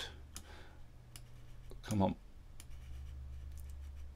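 About five faint, scattered computer mouse clicks over a low steady hum.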